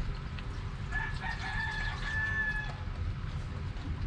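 A rooster crowing once: a single drawn-out call that starts about a second in and holds for nearly two seconds, over a low background rumble.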